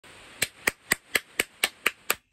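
Hand claps at a steady, even beat, about four a second, starting just under half a second in.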